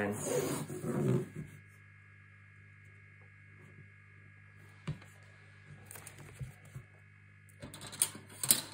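A voice speaks briefly at the start, then quiet handling of paper frame tape being pulled off its roll and laid down: a single sharp tap about five seconds in and faint crackles and taps near the end, over a low steady hum.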